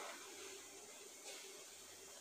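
Faint soft scraping of a fingertip drawing through a tray of cornmeal, with one brief swish about a second and a half in, over a steady low hiss.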